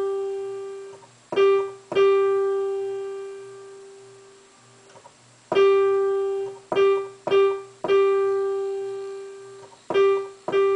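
Digital piano playing the G above middle C over and over, a simple beginner melody of seven notes on one pitch, some short and some held about two seconds, each ringing and fading after it is struck, with a short pause near the middle.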